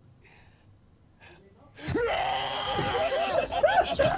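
A person's loud, drawn-out screech with a wavering, arching pitch, starting about two seconds in after near quiet; laughter follows near the end.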